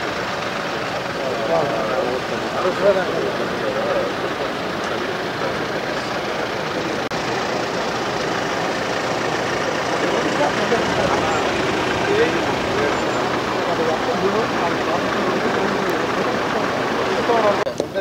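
Farm tractor engines running steadily, with many people talking over them.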